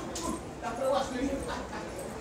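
A person's voice making short pitched sounds that are not clear words, in a large hall.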